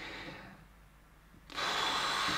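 A man's long blown-out exhale while hesitating over an answer: after a near-silent pause, a steady breathy hiss starts suddenly about one and a half seconds in.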